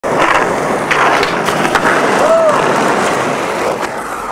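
Skateboard wheels rolling over asphalt: a steady, loud rush of noise, broken by a few sharp clicks from the board. A short tone rises and falls about midway.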